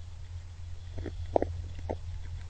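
Deer feeding on shelled corn at close range: a few short, sharp crunches from about halfway through, over a steady low hum.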